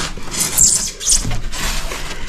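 Rigid foam insulation boards being handled and slid into place, their textured faces scraping and rubbing against each other and the door frame in short, irregular scratchy rustles.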